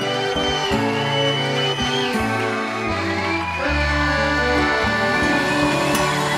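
A live band playing an instrumental passage: a piano accordion with acoustic guitar and drums.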